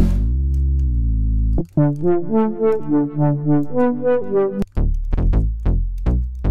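Sylenth1 software synthesizer presets being auditioned: a held bass note that bends down in pitch at the start, then a rapid arpeggiated run of short notes, then a few sharp plucked stabs about three a second near the end.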